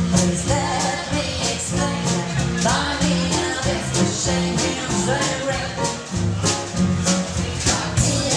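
A live 1920s-style jazz band playing with a steady beat, with a double bass and guitar among the instruments.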